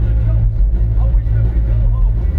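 Live rock band with a trombone playing loudly through a stage PA, with heavy booming bass dominating. A sung voice and horn line come through faintly above it.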